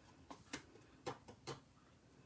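About five faint, light clicks and taps as a cardstock oval and a plastic tub of embossing powder are handled.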